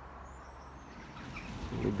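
Quiet outdoor background noise with a few faint, high bird chirps. A man starts speaking near the end.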